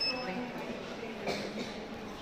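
A robot kit's buzzer sounding a steady high-pitched tone that cuts off about a third of a second in, its alert that a sensor has picked up an object or bright light; low room noise and faint voices follow.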